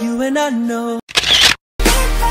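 Intro music with a stepping melody that cuts off about a second in. A camera-shutter sound effect follows, a short click-and-whir burst, then a moment of silence before a new music track with deep bass starts near the end.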